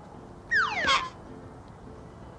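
Cartoon sound effect: a quick falling whistle-like glide ending in a short knock about a second in, the sound of an apple dropping into a wicker basket.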